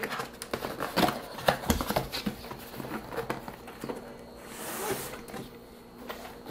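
A cardboard box being opened and handled: scattered taps, rustles and scrapes of cardboard, with a longer sliding, scraping hiss about four and a half seconds in as the case is drawn out of the box.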